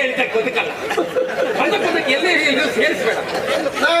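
Several voices talking over one another, a loud, continuous jumble of chatter.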